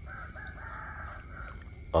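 A rooster crowing faintly, one drawn-out call of about a second and a half, over a steady chirr of crickets.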